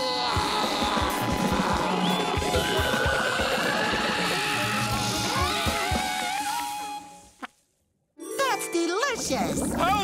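A cartoon character's long wordless yell and gagging over music and comic sound effects, fading out about seven seconds in; after a brief silence, a new burst of bubbly warbling sound effects and music starts.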